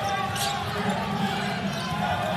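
A basketball dribbled on a hardwood court amid steady arena crowd noise, with one short sharp sound about half a second in.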